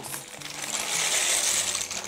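Dry penne poured in a steady stream from a plastic bag, rattling into a pot of hot stock. It builds shortly after the start, is loudest mid-way and tails off at the end.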